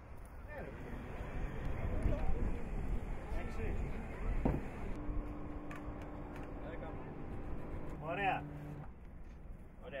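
Workers' voices calling out over a low background rumble. About halfway through a steady low hum starts and runs for about four seconds, and a short call comes near the end.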